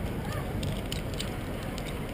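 Steady city street background noise, with a few light clicks.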